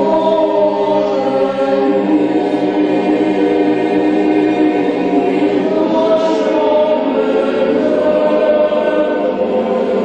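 Boys' choir, with trebles and young men's voices together, singing a sacred choral piece in long, sustained chords.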